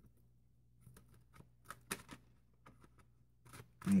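Tarot deck being shuffled by hand: a faint run of irregular card snaps and taps.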